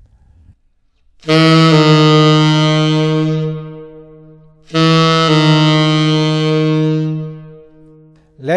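Tenor saxophone playing a half-step approach twice. Each time a short tongued G-flat is slurred down into a held F that fades away.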